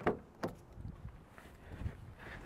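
Faint rustling and light taps of a person climbing into a car's driver seat through an open door, with a sharp click at the start and another about half a second in.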